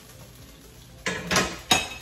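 A metal spatula scraping and clattering against a frying pan on a gas stove about a second in, ending in a single sharp clank.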